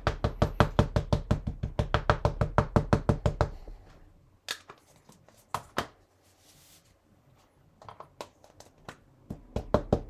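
Ink pad tapped rapidly against a rubber tree stamp mounted on an acrylic block to ink it, about eight light knocks a second for three and a half seconds. A few single knocks follow, and the fast tapping starts again near the end.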